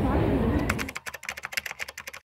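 Keyboard typing clicks: a quick, irregular run of keystrokes starting just under a second in, timed to text being typed out on screen.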